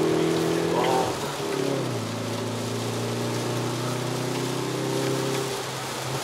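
Hyundai Veloster N's turbocharged four-cylinder engine heard from inside the cabin, its revs dropping about one to two seconds in as the car slows, then running steadily at low revs. Rain and wet-tyre noise run underneath.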